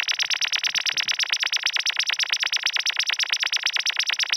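Sine-wave oscillator from a Max/MSP modular-synth patch, its pitch swept rapidly between 60 Hz and 6 kHz by a sine LFO: a loud, fast, pulsing electronic warble that repeats many times a second.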